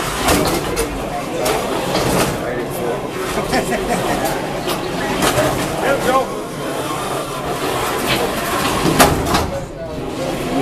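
Small combat robots knocking against each other and the arena walls, several sharp impacts with the loudest about nine seconds in, over continuous crowd chatter.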